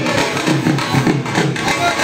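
Dhol drum played in a steady rhythm, about three low strokes a second.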